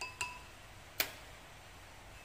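Light clinks on a ceramic clay pot as salt is tapped in from a plastic measuring spoon: two quick clinks with a short ring at the start, then one sharper tick about a second in.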